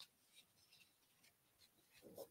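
Near silence, with a few faint rustles of a large paper poster print being handled.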